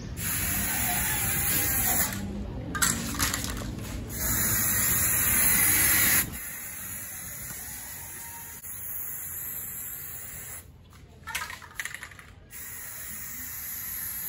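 Aerosol spray can of gray primer hissing as it is sprayed, in long passes broken by short pauses where the nozzle is let go: about two seconds in, near four seconds, and for about two seconds after the ten-second mark, with a few light clicks in the pauses. A low rumble underlies the first six seconds and stops suddenly.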